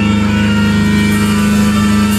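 Live heavy metal band heard loud through the concert PA, with a distorted low guitar chord held steady.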